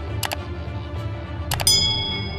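Two quick double mouse clicks about a second and a half apart, the second followed at once by a bright notification-bell chime that rings on, over background music with a steady low bass.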